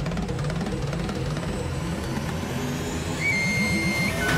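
Dramatic background music score with low percussion. A single high sustained tone comes in a little after three seconds.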